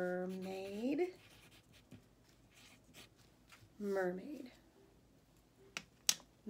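A woman hums a long "mmm", the letter sound of M, held steady and then rising in pitch at its end. A shorter "mm" follows about four seconds in, with faint strokes of writing or drawing on paper between the two.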